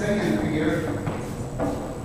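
A voice talking, with a few clicks of dance shoes stepping on a hardwood floor.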